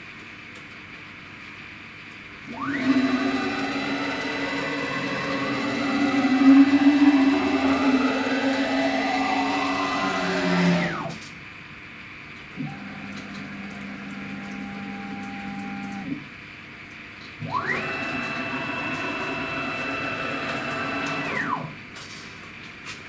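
Gantry CNC router's stepper motors whining as the axes are jogged by hand, in three moves. The first runs from about 3 to 11 seconds in and the last from about 18 to 21 seconds; in each, the pitch rises as the motors speed up and falls as they stop. Between them, around 13 to 16 seconds, comes a shorter, lower-pitched move.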